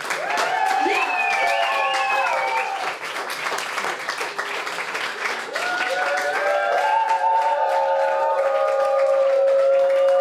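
Live audience applauding and cheering, with held musical notes sounding over the clapping; a long steady note runs through the last few seconds.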